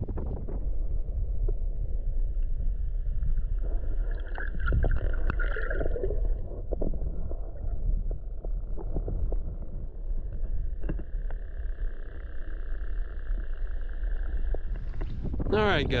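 Steady low rumble of wind and water on the microphone, with scattered small knocks. A faint, steady high whine fades in twice, for a few seconds each time.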